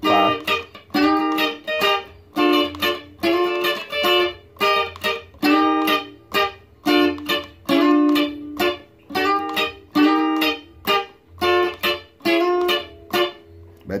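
Sunburst Stratocaster-style electric guitar played with a clean tone, picking a highlife melody line note by note, about two notes a second.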